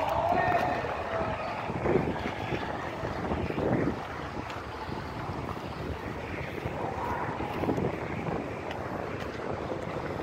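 Wind buffeting a phone microphone over steady outdoor background noise, with a brief pitched sound at the very start.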